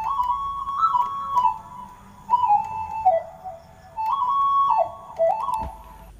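Yamaha PSR arranger keyboard playing a dangdut-style suling melody on its HipLead lead voice, sounding like a bamboo flute. It plays three short phrases with quick ornamental turns, each stepping down in pitch.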